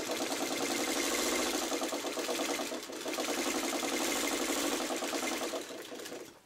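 Vintage sewing machine running at a steady stitching speed, its needle mechanism making a rapid, even rhythm as it sews a seam through quilt patchwork. It eases briefly about halfway, then stops at the end.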